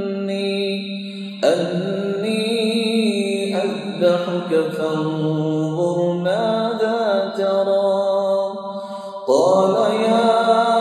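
A man reciting the Quran in Arabic in the melodic tajwid style, with long drawn-out phrases whose held notes rise and fall in ornamented turns. He takes short breaths between phrases, with new phrases starting about one and a half seconds in and again near the end.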